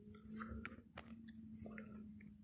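Faint outdoor ambience: scattered soft crackles and clicks over a low, steady hum.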